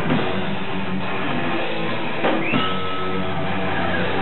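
Metal band playing live, with loud, dense electric guitars.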